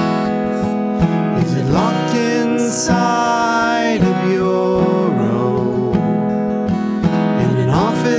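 Acoustic guitar strummed steadily, playing an instrumental passage of a folk song.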